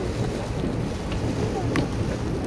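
Wind on the microphone over a steady low rumble, with faint voices in the background.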